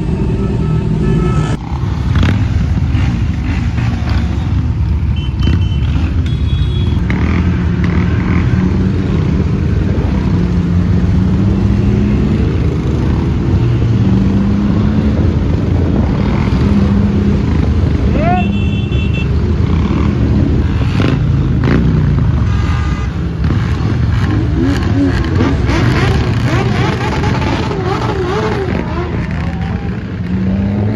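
Motorcycle engines running in a moving group ride through city traffic, pitches rising and falling as the bikes speed up and slow, with a few short beeps around five to seven seconds in.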